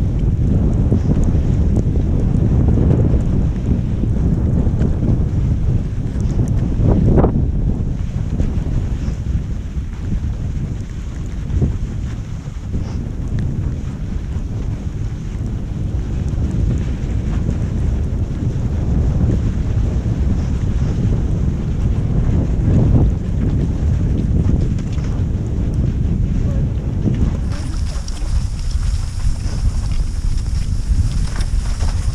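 Wind buffeting the camera microphone as a cross-country skier glides downhill on a snowy trail: a loud, gusty low rumble that lessens slightly near the end.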